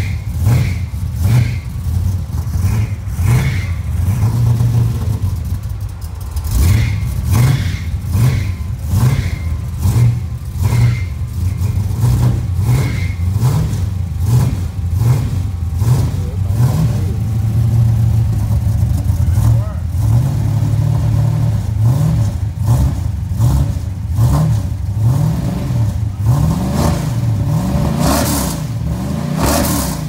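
Chevy 350 V8 running through a new dual exhaust with an X-pipe and MagnaFlow mufflers, just after start-up, revved in short throttle blips about once a second. Near the end the revs climb in longer pulls.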